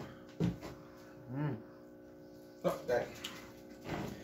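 A man's brief low murmurs and a few soft clicks over a faint steady hum.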